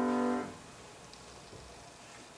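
Grand piano holding a chord that is cut off sharply about half a second in as the keys are released, followed by a quiet room.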